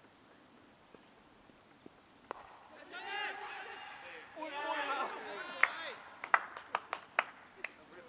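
Voices calling out across the field, followed by a string of sharp, irregular knocks, the loudest sounds here.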